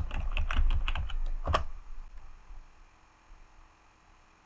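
Computer keyboard typing: a quick run of keystrokes over the first second and a half, ending with one louder click.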